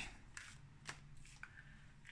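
A tarot deck being handled and shuffled in the hands: a few faint, soft card clicks and rustles.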